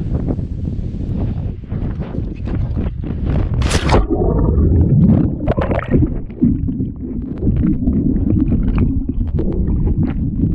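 Wind buffeting the microphone, then a sharp splash nearly four seconds in as the action camera plunges into the lake. After that comes muffled underwater rushing and bubbling.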